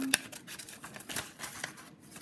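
Scissors cutting through paper in a series of short snips, the sharpest just after the start.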